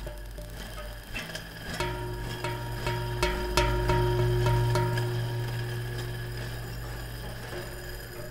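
Instrumental background music: a low sustained drone with a run of struck notes that ring on, between about two and five seconds in, then slowly fading.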